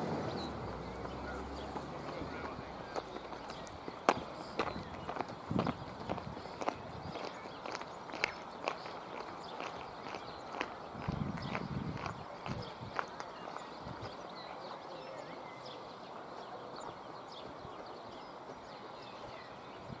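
Faint outdoor ambience with scattered, irregular sharp clicks and taps, most of them in the first two-thirds, and a dull thump about eleven seconds in.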